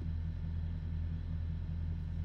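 Steady low background hum with no other events.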